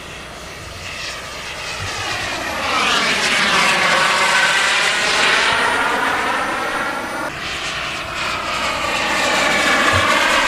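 Radio-controlled model jet's turbine engine flying past. It grows louder about three seconds in, with a sweeping rise and fall in pitch, eases around eight seconds, and builds again near the end.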